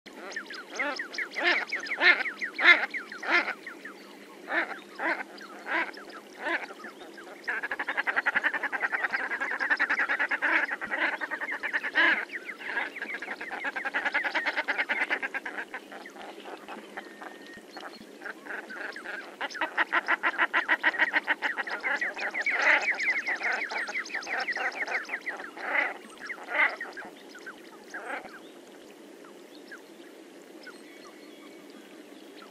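Common shelduck calling: separate calls two or three a second, then two long runs of rapidly repeated notes, ending with a few separate calls.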